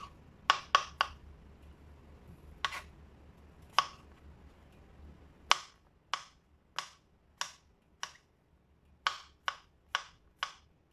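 Small kitchen knife chopping button mushrooms on a plastic cutting board: sharp knocks of the blade hitting the board, a few scattered ones at first, then a steadier beat of a little under two knocks a second from about halfway.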